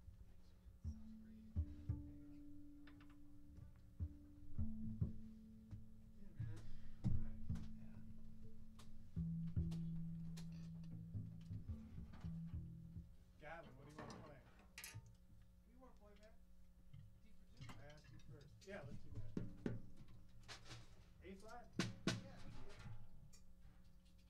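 Quiet changeover sounds between tunes: a few held double bass notes stepping in pitch over the first half, scattered knocks and taps from the drum kit being set up, and low, indistinct talk in the second half.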